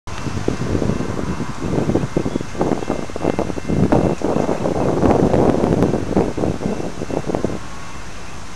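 Wind buffeting the microphone in uneven gusts, cutting off suddenly near the end and leaving a steady low background rumble.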